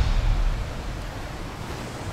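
Surf washing against a shoreline with wind on the microphone: a steady rushing noise that slowly fades down.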